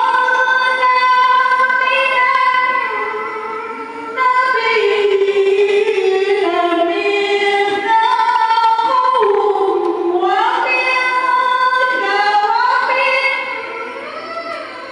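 A woman's melodic Qur'an recitation in Arabic, sung into a handheld microphone, with long held notes and ornamented slides in pitch. Her phrases break for short breaths about four seconds in and near the end.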